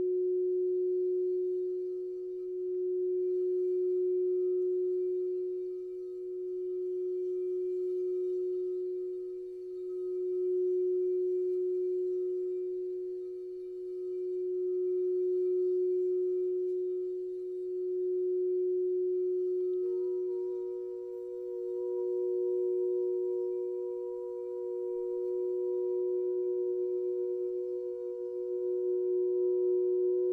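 Frosted quartz crystal singing bowls played by circling mallets around their rims: a steady low ringing tone that swells and ebbs every few seconds. About twenty seconds in, a higher-pitched bowl joins and rings on with it.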